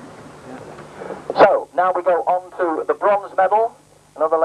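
An announcer speaking over a public-address system. The speech starts about a second in, after faint background noise.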